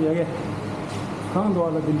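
A person talking, with a pause of about a second in the middle, over a steady low hum of room noise.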